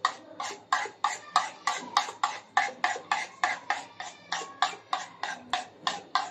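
A spoon beating egg batter in a bowl, clicking against the bowl in a steady rhythm of about four strokes a second.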